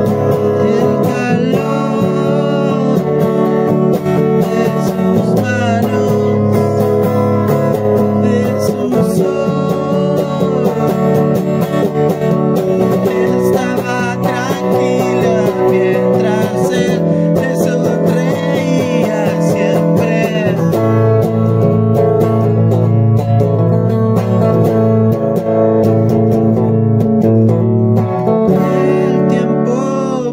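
Music from a home-made song cover, with an acoustic guitar played steadily throughout.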